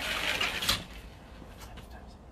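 A trainer throwing a straight-straight-hook punch combination: a sharp breathy exhale lasting under a second, with a quick knock or swish near its end and a couple of faint taps after it.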